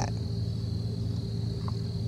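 Insects calling steadily at one high, even pitch over a low, steady hum.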